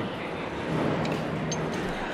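Background noise of a busy indoor venue: a steady murmur with a faint low hum and a small click about one and a half seconds in.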